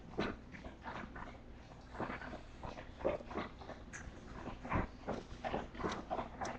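Bulldog puppies whimpering and squeaking, in short, irregular sounds, several a second.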